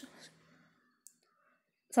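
A pause in a woman's speech, nearly silent apart from one faint, short click about a second in. Her voice trails off at the start and comes back right at the end.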